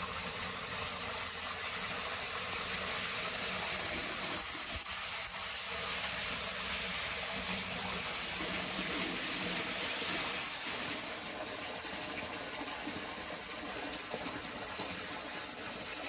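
Spring water pouring in a strong, steady stream from a metal pipe, filling a large plastic bottle held under it and splashing into the shallow pool below.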